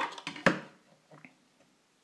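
3D-printed PLA push block set down on a hard tabletop: one sharp plastic knock about half a second in, followed by a couple of faint taps.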